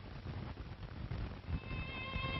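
Crackling, hissing background noise of an old, low-fidelity soundtrack recording. Near the end, sustained violin notes begin as music enters.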